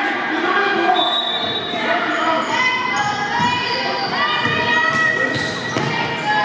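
A basketball bouncing on a hardwood gym floor, with short high squeaks and voices in the echoing hall.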